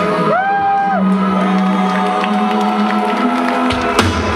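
Live power metal band playing a held, sustained passage, with a note bending up and back down early on, under crowd cheering and whoops, recorded from within the audience. The drums and full band kick back in right at the end.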